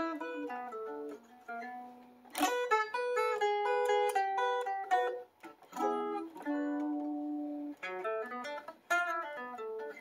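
Gibson ES-335 semi-hollow electric guitar played solo: blues licks in short phrases of single notes and bends, broken by brief deliberate pauses that build expectation before the next phrase.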